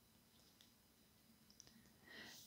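Near silence: room tone, with a few very faint clicks near the end.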